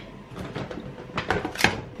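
Groceries being handled and lifted out of a reusable shopping bag: a few short rustles and light knocks of packaging, the sharpest about a second and a half in.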